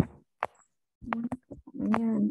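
A few short pops and clicks, then a brief murmur of a person's voice near the end.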